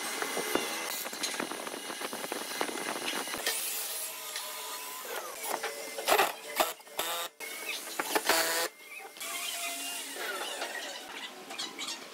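Cordless drill running in short bursts, its pitch rising and falling as it drives into the wooden parts, cut together with knocks and scrapes of the wooden pieces being handled on the workbench.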